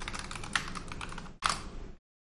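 Typing on a computer keyboard: a quick run of keystrokes, with a brief pause and one louder key press about a second and a half in.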